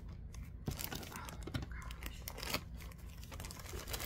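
Packaging crinkling and rustling as it is handled, in irregular short crackles.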